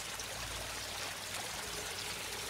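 Steady trickle of water running over the rocks of a small koi-pond waterfall.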